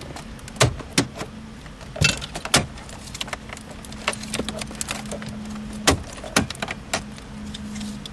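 Plastic clips of a dashboard trim panel snapping and clicking as the panel is pried loose with a pry tool: a string of sharp, irregular clicks, the loudest about six seconds in, over a steady low hum.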